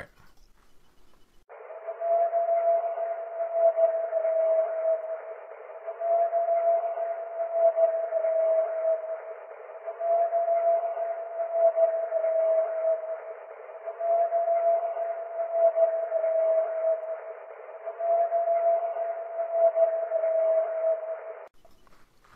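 An unexplained long howl from a field recording, the same short clip looped five times. Each howl holds one steady pitch for about three and a half seconds over a constant hiss, and the recording sounds thin, with its lows and highs cut off.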